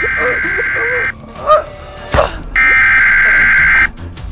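Siren Head creature sound effect: harsh buzzing siren blasts, one through the first second and a longer one from about two and a half seconds to near the end, with a sudden sweeping sound between them. A wavering, moaning voice sounds under the first blast.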